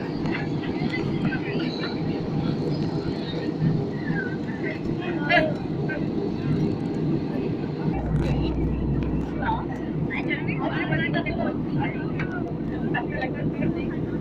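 Steady low roar of an Airbus A320-family airliner cabin in cruise, from the engines and airflow, with faint indistinct passenger voices underneath. A deeper rumble joins about eight seconds in.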